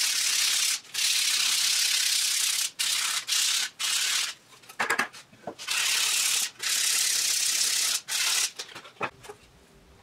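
Hand sanding of an ebony peghead overlay and the maple peghead face, preparing the two mating surfaces for glue-up. It is a rough scratching of abrasive on hardwood in runs of a second or two with brief pauses, a few short strokes midway, and it stops about a second before the end.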